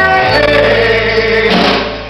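Live blues band playing, with singing over guitar, bass and drums; the band's sound dips briefly near the end.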